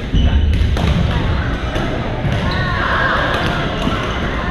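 Badminton play in a gym: sharp, repeated racket hits on shuttlecocks and sneaker squeaks on the court floor, with background chatter.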